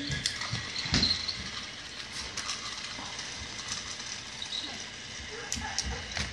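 Battery-powered Thomas TrackMaster toy train motor whirring, its small gears clicking, with a knock of plastic toys about a second in.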